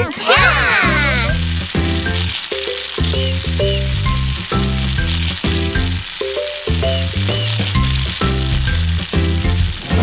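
Toy balloons squealing in wavering pitches as they are let go in the first second or so, then a steady hiss of air rushing out of them as they push the little racers along. Upbeat music with a bouncy bass line plays underneath.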